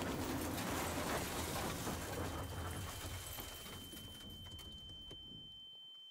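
Aftermath of a car crash in a safety film: a dense rushing noise with a low rumble that slowly fades away, and a steady high-pitched ringing tone that starts about two seconds in and holds on.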